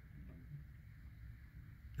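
Quiet room tone with a faint low hum; no distinct sound.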